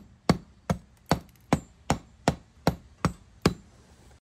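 Claw hammer tapping on a rock-hard sugar board around its wooden block, nine sharp, evenly spaced knocks at about two and a half a second.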